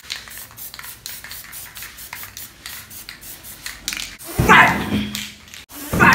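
Aerosol spray-paint can hissing in a run of short bursts onto a canvas. About four and a half seconds in comes a brief, louder voice.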